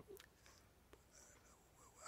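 Near silence: faint room tone with a few small, quiet clicks.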